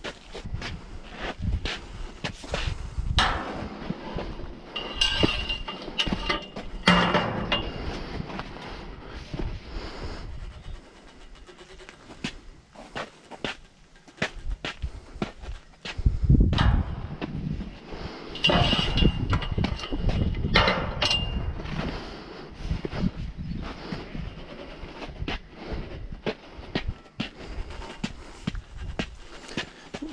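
Irregular metallic clicks, clanks and scraping as a large pipe wrench works a threaded galvanised steel pump column joint that is nearly locked up, with a brief high-pitched ring twice.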